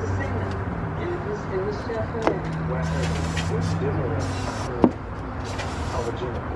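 A steady low hum like a running vehicle engine, with faint voices and two sharp clicks, one about two seconds in and one near the end.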